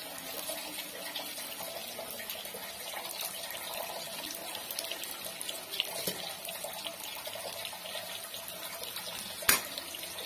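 Rice and vegetables frying in a steel pan, a steady hiss, with the metal spoon knocking against the pan a few times, loudest near the end.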